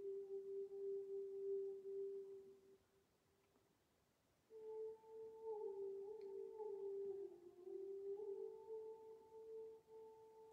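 Faint, soft background music: a slow single melody line of long held, pure-sounding notes. The first note fades out about three seconds in, and after a short silence a higher note begins, stepping down and back up in pitch.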